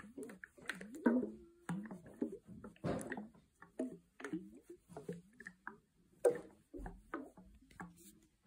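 Thick, slimy marshmallow root cold infusion sloshing and glooping in a glass mason jar as it is shaken. It comes as a string of irregular wet gulps, the sound of very mucilaginous liquid.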